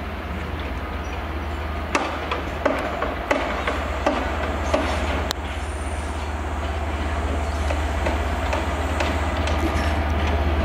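Class 67 diesel locomotive hauling coaches past at low speed, its engine a steady low drone. The wheels click over rail joints and crossings roughly every two-thirds of a second from about two to five seconds in.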